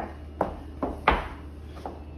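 Four sharp, short knocks and clicks at uneven intervals over quiet room tone.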